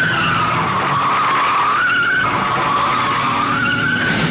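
A patrol car's tyres squealing in one long skid, the squeal's pitch dipping and rising twice.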